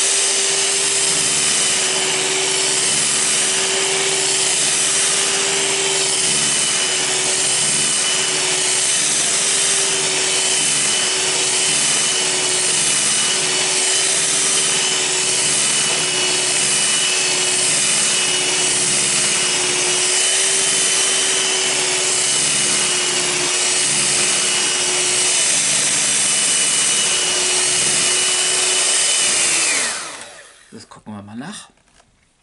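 Electric hand mixer running steadily at high speed, its twin beaters whipping cream stiff in a ceramic bowl. Near the end the motor is switched off and its pitch falls away as it winds down.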